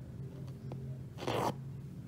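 Cotton embroidery thread being pulled through aida cloth by hand: a single short swish of the thread drawing through the fabric about a second in, after a faint tick of the needle.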